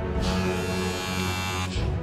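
Gold Wahl cordless hair clipper switched on and buzzing for about a second and a half, then off, over background music.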